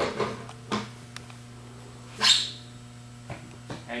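Knocks and clunks of the Rotovac 360i's cleaning head being worked off the machine, then one short, loud squeak about two seconds in, over a steady electrical hum.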